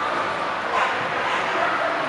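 A dog barking a couple of times over the steady chatter of a crowd.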